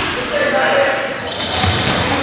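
Game sounds in a gymnasium: a basketball bouncing on the hardwood floor, with a few thuds about one and a half seconds in, under players' voices, all echoing in the hall.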